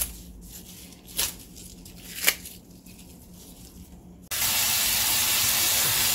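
A few short, crisp cuts of a kitchen knife through young radish stalks, about one and two seconds in. Then, about four seconds in, a tap suddenly starts running, water streaming steadily into a stainless steel bowl of greens.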